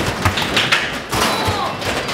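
Basketballs thudding against the backboard, rim and ball return of an arcade basketball hoop-shooting machine, several thuds in quick succession.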